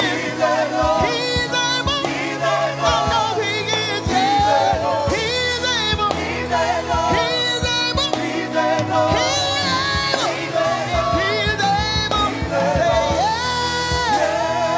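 Gospel praise team singing with instrumental backing: a woman leads with sliding, ornamented vocal lines while backing singers join in, at a steady full level.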